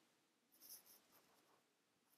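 Near silence, with a faint brief scratching sound about half a second in.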